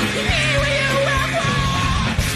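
Rock band playing live at full volume: guitar, bass and drums under a high, wavering lead vocal that ends on a held note.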